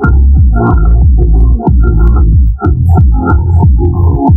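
A car-audio subwoofer playing bass-heavy electronic music loudly, with a constant deep bass and falling bass notes repeating a few times a second.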